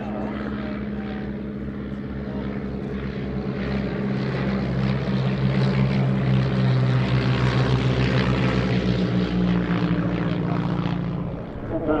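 Two Miles Magister trainers' four-cylinder de Havilland Gipsy Major engines and propellers droning steadily in a formation flypast. The sound grows louder from about four seconds in, holds strong through the middle and eases off near the end.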